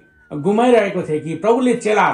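Speech: a person's voice speaking continuously, the talk being interpreted into Nepali.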